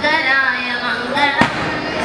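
A single sharp firecracker bang about one and a half seconds in, over steady singing and voices.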